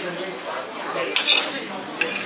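Metal serving fork and spoon clinking and scraping against a china plate while serving food, with a quick cluster of clinks a little past halfway.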